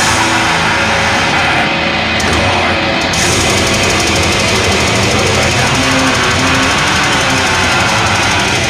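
Black metal band playing live at full volume: distorted guitars, bass guitar and drums in a dense, unbroken wall of sound.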